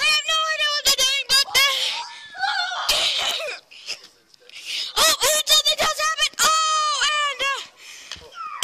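Children's high-pitched voices yelling and squealing in short wavering cries, with a brief lull about four seconds in.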